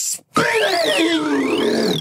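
Synthesized wheel-spin sound effect. After a short hiss it starts about a third of a second in: a high warbling tone sweeping up and down about once a second over lower tones that slide steadily downward.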